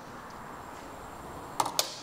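Faint steady room hiss, then two short sharp clicks close together near the end.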